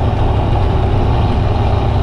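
Steady, loud cab noise of a semi truck at highway speed: the diesel engine's low drone under an even rush of road and wind noise. The cab is noisy because a door or window doesn't seal right.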